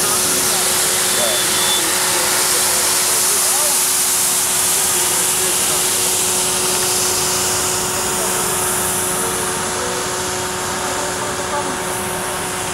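Fiorentini ride-on floor scrubber-dryer running: the steady rushing whine of its suction motor with a constant hum under it, growing a little quieter over the last few seconds as the machine drives away.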